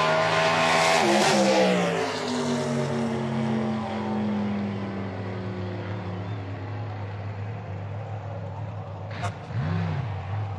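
Drag car's engine running loud at high revs, its pitch dropping as the car comes past and slows. It settles to a lower, quieter steady run as the car rolls to a crawl after an out-of-shape run. A sharp click comes near the end.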